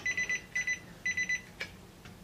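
Digital clamp meter's beeper sounding in three quick bursts of rapid high-pitched beeps, followed by a single click.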